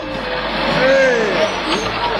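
Bus engine running, a radio-drama sound effect, as the bus stuck in mud is pushed free. A voice shouts over it about a second in.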